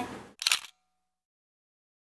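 A single camera-shutter click about half a second in, a sound effect laid over a cut between scenes.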